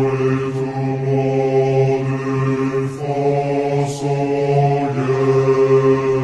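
Slowed-down, heavily reverberated recording of a French military promotion song: voices in chorus singing long held chords over a deep sustained note, the chord shifting about halfway through and again near the end.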